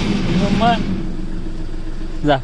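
A car engine idling steadily, with a short child's vocal sound about half a second in.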